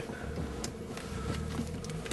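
Mazda RX-8 rotary engine idling, heard from inside the cabin as a steady low hum, with a few light clicks.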